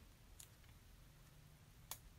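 Near silence: room tone, with a faint tick about half a second in and a short click near the end.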